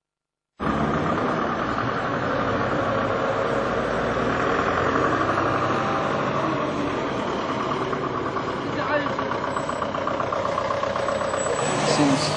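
Street ambience that cuts in abruptly about half a second in: a vehicle engine idling steadily under the talk of people nearby.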